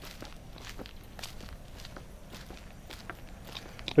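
Soft footsteps of a person walking on a paved road.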